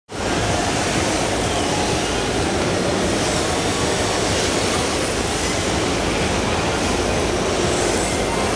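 Steady rushing sound of a large indoor hall while 1:10-scale electric RC drift cars run on the track, with faint gliding motor whine in it.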